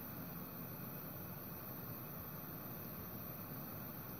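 Steady low hiss with no distinct events: background noise inside an ice-fishing shelter.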